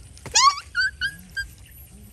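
A young animal's high-pitched calls: one loud cry that rises sharply in pitch, followed by three short, quieter yelps.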